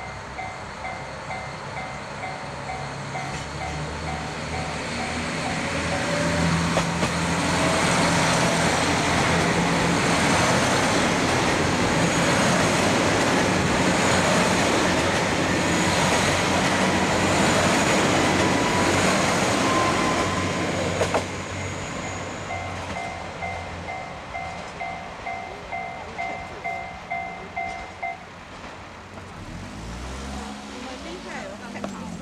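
JR KiHa 261 series diesel express train accelerating away from a station and passing close by, its engines and wheels building to a loud steady noise that fades about two-thirds of the way through. A level crossing bell rings in even repeated strokes before the train reaches its loudest and again after it has passed.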